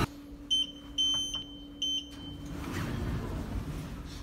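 Lift touch-panel keypad beeping as floor buttons are pressed: three high electronic beeps within about two seconds, the second one longer. A low steady hum runs under the beeps and stops soon after them.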